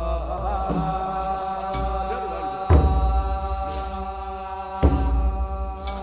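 Ethiopian Orthodox aqwaqwam liturgical chant: voices holding a long, slow chanted note together, with deep drum strokes about every two seconds.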